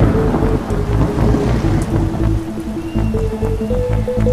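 Electronic music with a repeating stepwise melody over a bass line, with a swell of rain and thunder noise in the first two seconds.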